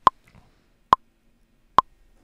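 Software metronome in Logic Pro ticking on the beat at 70 BPM: three short, sharp clicks a little under a second apart, the count-in before a vocal take is recorded.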